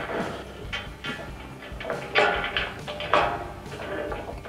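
Tie-down hardware sliding into the grooved T-slot rail of an aluminum truck cab rack, with a few short scrapes and knocks about two and three seconds in.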